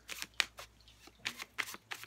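A tarot deck being shuffled by hand: a quick, irregular run of sharp card snaps and flicks.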